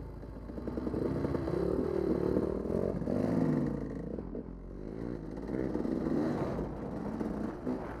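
Dirt bike engine revving as the bike pulls away and rides along a dirt track, its pitch rising and falling with the throttle, loudest about three and a half seconds in. Heard from a helmet-mounted camera.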